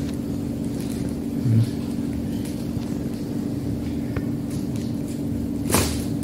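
A steady machine hum holding one constant pitch over a low rumble, with a brief rustle or knock just before the end.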